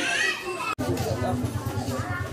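Background voices, including children's, in a residential street. About three-quarters of a second in, a hard cut, after which a steady low hum runs under the voices.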